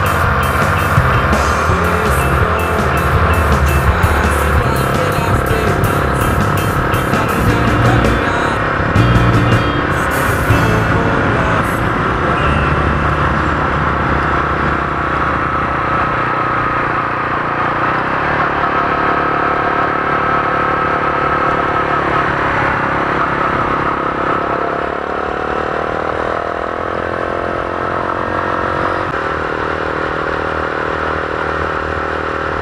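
Motor vehicle engine running at road speed, its pitch rising in the last few seconds as it accelerates and then dropping suddenly, as at a gear change.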